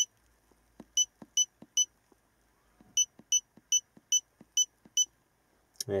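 Electronic key beeps from an iCarsoft i910 hand-held scan tool as its buttons are pressed to scroll through the menu: about ten short, high-pitched beeps in two quick runs, each with a faint button click.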